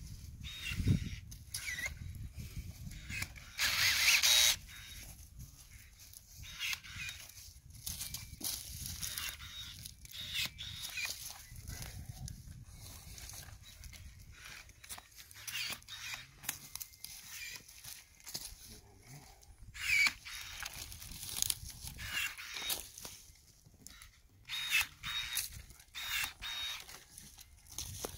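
Hand pruning shears (secateurs) snipping plum-tree twigs, sharp clicks at irregular intervals along with the rustle of branches. A louder half-second hiss about four seconds in.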